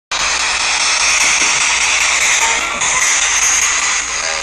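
Ghost box (spirit box) sweeping radio frequencies: loud, steady static hiss with brief faint snatches of broadcast sound, its tone changing suddenly a little before three seconds in.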